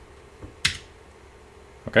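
A single sharp key click on a computer keyboard about two-thirds of a second in, with a fainter tap just before it.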